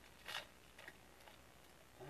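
Near silence, with a few faint, brief soft dabs as a paint-loaded texturing tool is tapped against a foam board. The loudest comes about a third of a second in.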